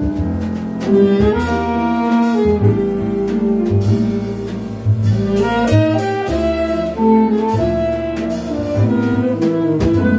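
Live jazz quintet playing a pretty ballad: alto and tenor saxophones play the melody together over piano, upright bass and drums with cymbals.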